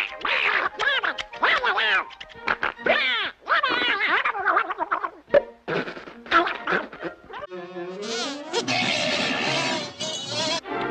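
Donald Duck's garbled, squawking cartoon voice sputtering in a rage, in rapid short bursts over cartoon music. Past the middle a drawn-out gliding tone, then a denser, noisier stretch to the end.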